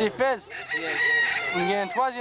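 Domestic fowl calling: one long, drawn-out call lasting about a second, loud against the surrounding talk.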